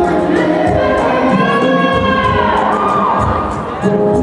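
Slow rumba song with a singing voice holding long, gliding notes over light, steady percussion.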